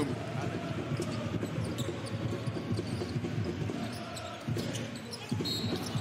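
Basketball being dribbled on a hardwood court, with the steady murmur of an arena crowd underneath.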